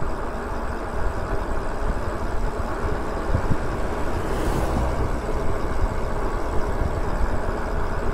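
Steady wind rush on the microphone with the tyre and road noise of an e-bike riding along a paved street, heaviest in the low rumble. A brief faint hiss rises about halfway through.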